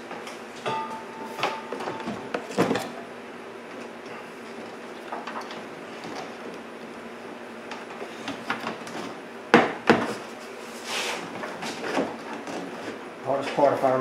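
Plastic windshield cowl panel being handled and pushed into place: rubbing and scraping with scattered sharp plastic knocks, the loudest a pair about ten seconds in.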